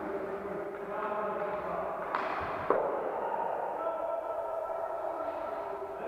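A single sharp crack of an inline hockey stick striking the puck, about two and a half seconds in, ringing round a large echoing sports hall, over a steady murmur of distant players' voices.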